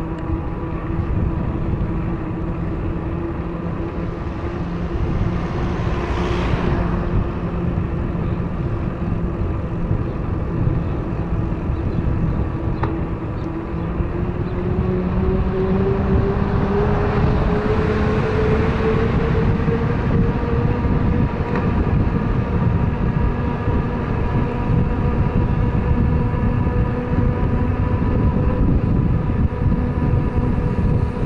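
Wind rumbling on the microphone of a camera riding on a moving bicycle, under a steady whine that climbs in pitch about halfway through and then holds. Two swells of hiss come and go, about 6 and 18 seconds in.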